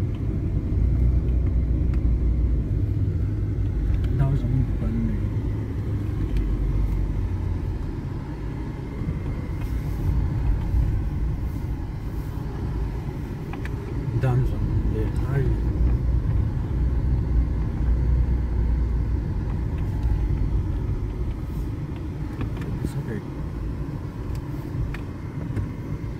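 A car driving, heard from inside the cabin: a steady low rumble of engine and tyres on the road.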